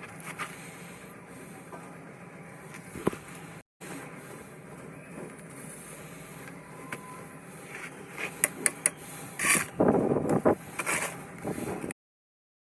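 Steady building-site background hiss, then from about eight seconds in a run of scrapes and knocks from a steel trowel and concrete blocks being handled and laid, loudest around ten seconds.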